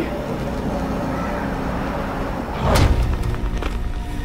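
Dark trailer score: a low, steady drone with faint held tones, broken a little under three seconds in by a loud swelling hit that ends in a deep boom.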